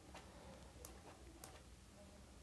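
Near silence with a few faint ticks of a pen against paper as a man writes, spaced roughly half a second to a second apart.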